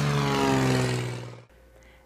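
Small single-engine propeller airplane flying past low after takeoff, its engine drone slowly falling in pitch and fading, then cutting off about a second and a half in.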